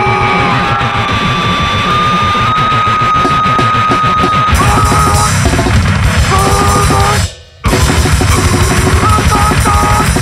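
Powerviolence band playing loud and fast: pounding drums and cymbals under guitar, with a high note held for a couple of seconds. The music cuts out for a split second about seven seconds in, then comes straight back.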